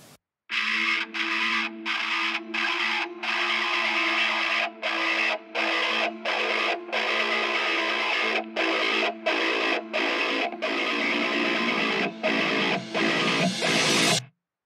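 High-gain distorted electric guitar, an ESP Eclipse, playing a solo riff. A chord rings out for several seconds, then chugging chords are cut short again and again by brief silent stops.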